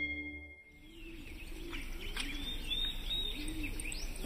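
Music fades out in the first half second, then birds calling outdoors: high, short chirps over a lower call repeated about once a second.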